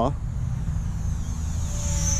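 High-pitched whine of the Eachine P-51 Mustang micro RC plane's small electric motor and propeller, growing louder as it flies low toward the listener. Flown this low it has a better sound, which the pilot thinks may be the sound bouncing off the ground.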